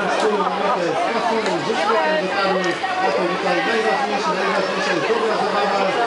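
Several people talking at once: a steady, overlapping chatter of voices with no single clear speaker.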